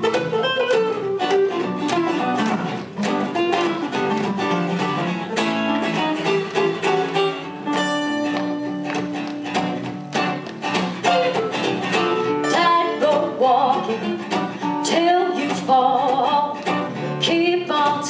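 Two acoustic guitars playing an instrumental passage of a country-style song, picked and strummed together.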